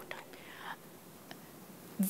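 Quiet room tone during a pause in speech, with a soft breathy hiss about half a second in and a faint tick a little past the middle.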